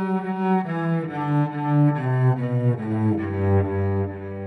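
Solo cello played with the bow in an improvised line of sustained notes stepping downward in pitch, settling on a low held note about three seconds in.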